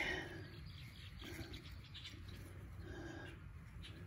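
Quiet outdoor background with faint, scattered bird calls and a soft click about a second in.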